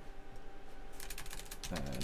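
Computer keyboard typing: a quick run of keystrokes about a second in, over a faint steady hum.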